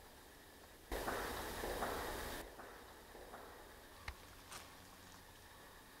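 A brief rustle that starts suddenly about a second in and stops about a second and a half later, then quiet with one faint click.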